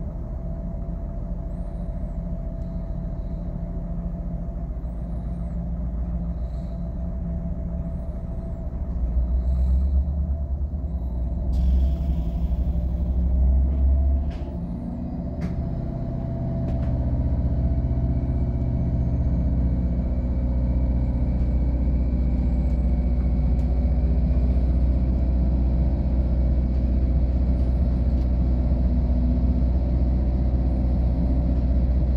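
Passenger train heard from inside the coach: a steady low running hum while it stands at a station, a short hiss of air about twelve seconds in, then the train pulls away with a slowly rising whine over a louder low drone as it gathers speed.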